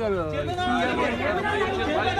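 Speech: several people talking at once.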